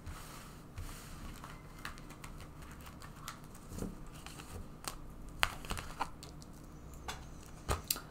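Tarot cards being slid together and gathered up off a cloth-covered table: soft rustling and scraping with scattered light taps, and a few sharper clicks in the second half.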